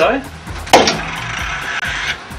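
A single sharp knock about three-quarters of a second in as a crash inertia switch is struck to trip it. A steady hiss follows for just over a second and then stops abruptly.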